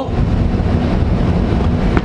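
Steady, loud low rumble with a hiss above it: constant background noise with no clear beat or tone changes.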